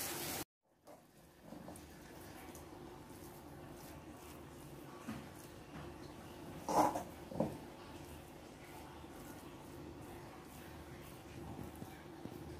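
Faint room tone with a low steady hum. About seven seconds in, two short sharp sounds stand out, with a smaller one a little before them.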